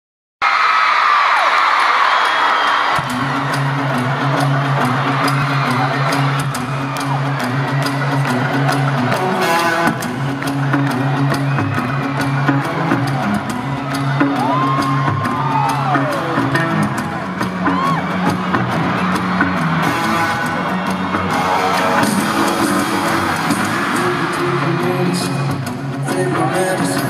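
Arena crowd screaming and cheering, then a live band's song intro with electric guitar chords from about three seconds in, with high screams and whoops from fans near the microphone over the music.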